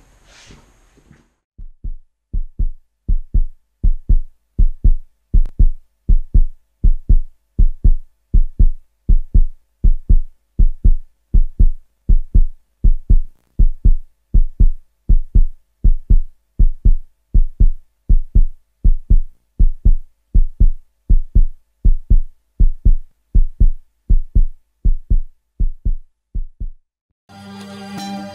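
A deep, heartbeat-like thump repeating evenly about twice a second, fading in over the first few seconds and stopping a second before the end. Music comes in just before the end.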